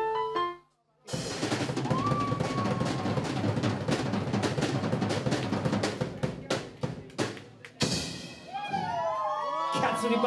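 An electric keyboard tune stops, and after a brief gap a drum kit breaks into a fast snare roll with cymbals for about six seconds, slowing into separate hits. Voices come in near the end.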